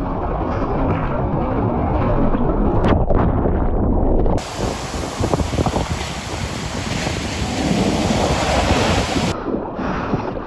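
Breaking shorebreak wave heard from a camera at water level inside it: a dense rush of churning water. About four seconds in the sound cuts to surf crashing on the beach heard from the shore, with a faint steady high-pitched tone over it. Near the end it cuts back to water sloshing around the bodyboard.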